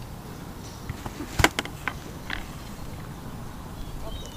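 A sharp click about one and a half seconds in, then a few fainter ticks: small fishing tackle being snapped onto the line with snips.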